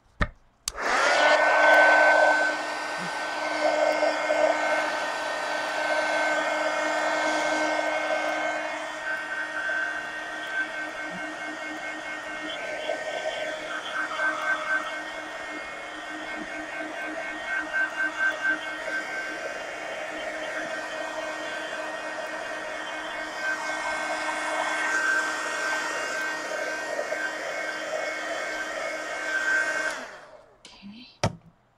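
Handheld electric hot-air dryer switched on about a second in and run to dry wet acrylic paint. It runs steadily with a high whine over a rushing airflow, wavering in loudness, and is switched off at the very end.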